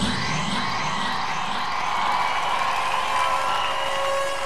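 Eurodance synthesizer intro with no bass or beat: several held synth tones and a few sweeping pitch glides near the start, over faint arena crowd cheering.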